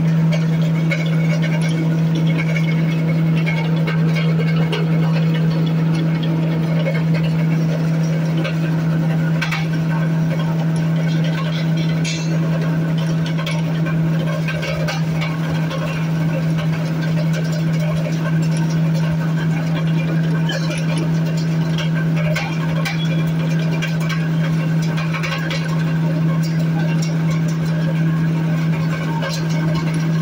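Electric-motor-driven coconut husk pulverizer running steadily with a strong low hum as handfuls of coconut fibre are fed into its hopper and shredded, with scattered light ticks and crackles from the material.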